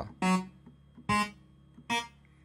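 Three short single notes played one after another on an Arturia synthesizer keyboard, the group of three black keys, each note stopping quickly, a little under a second apart.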